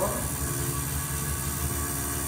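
Electrically maintained tuning fork of a Melde's apparatus buzzing steadily, driven by its electromagnet coil, as it keeps the attached thread vibrating in a standing wave.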